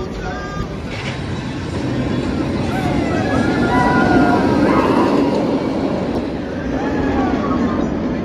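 Raptor, a Bolliger & Mabillard inverted steel roller coaster, with its train running through the elements. The track rumble swells to its loudest about four seconds in as the train passes low and close, with riders' shouts and people's voices over it.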